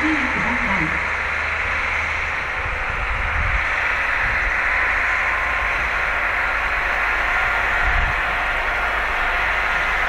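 KiHa 40 diesel railcar running toward the listener through snow: a steady low engine rumble under an even hiss of wheels and spray.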